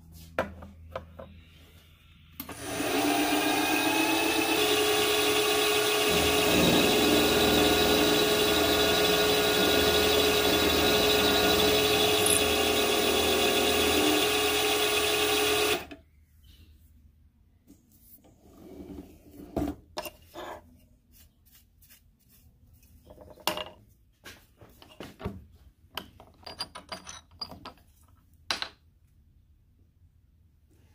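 Precision Matthews PM-727V benchtop milling machine drilling into a small metal bracket: the spindle motor's whine rises briefly as it comes up to speed about two and a half seconds in, then runs steadily with the cut for about thirteen seconds and stops suddenly. Afterwards come scattered light clicks and knocks.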